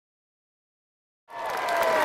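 Silence for just over a second, then a large crowd's applause fades in, with a faint cheer in it.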